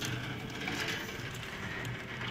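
Heavy downpour: a steady, even hiss of rain, heard from indoors through a window pane.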